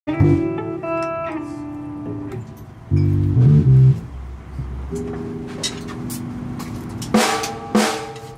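Band music in short phrases: electric guitar and bass notes over drum kit hits, changing abruptly every few seconds.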